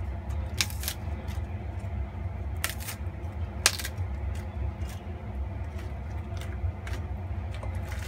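Baby napa cabbage leaves being torn apart by hand and placed in a pot: a handful of crisp snaps and cracks, the loudest a little over halfway through the first half, over a steady low hum.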